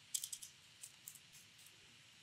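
Faint computer keyboard typing: a quick run of keystrokes in the first half second, then a few scattered single keystrokes.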